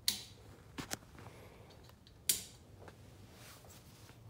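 A few sharp, hard clicks in a quiet room: one at the start, a quick pair just under a second in, and another a little past two seconds, the first and last ringing briefly.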